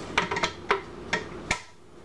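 Hard clear plastic fountain parts clicking and clacking together as they are fitted during assembly: about five short sharp clicks in the first second and a half, then quiet.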